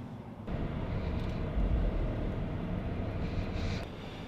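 A vehicle running, a steady low rumble that starts about half a second in, swells in the middle and drops away near the end.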